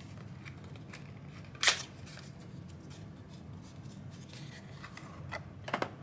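A small paperboard soap box being opened and the bar slid out by hand: one short, sharp crackle of card about two seconds in, then soft light clicks and scrapes of card handling, over a low steady hum.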